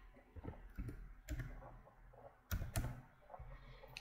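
Faint keystrokes on a computer keyboard: a few scattered sharp clicks, the sharpest about a second in and around two and a half seconds in.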